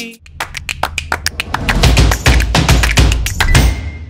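Short percussive transition sting: a rapid run of sharp taps and clicks over a swelling deep bass, building through the middle and fading out near the end.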